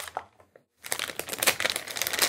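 Crinkling of a thin plastic anti-static bag being handled and unwrapped to free a circuit board, in quick crackly bursts with a brief pause about half a second in.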